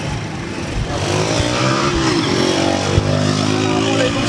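A motor vehicle's engine, likely a small motorbike-type engine, revving up close by, its pitch climbing twice over a background of street noise.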